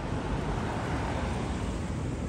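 Steady city street background noise: an even, low rumble of traffic with no distinct events.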